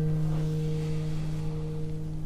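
Background music: a sustained low chord, left ringing after a guitar strum, holds steady and slowly fades.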